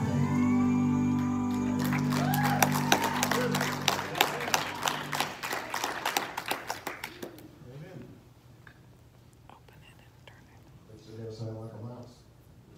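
A song ends on a held chord while a small congregation claps for a few seconds. The clapping thins out and stops about seven and a half seconds in, and a man's voice is heard briefly near the end.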